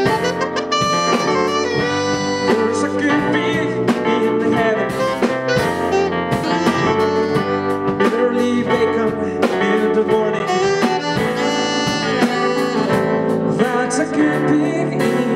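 Live jazz-blues band playing an instrumental passage: a saxophone line over Hammond keyboard, electric guitar and a drum kit keeping a steady beat.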